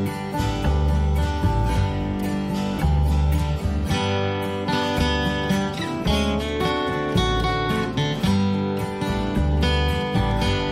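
Instrumental break in a song, with no singing: strummed acoustic guitar chords over changing low bass notes at a steady level.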